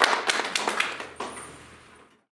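Scattered applause thinning out to a few separate claps and fading away.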